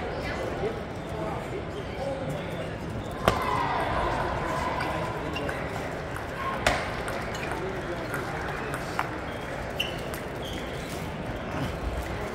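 Table tennis ball clicking off paddles and the table, a few sharp knocks spaced a few seconds apart, over the steady murmur of voices and play in a large hall.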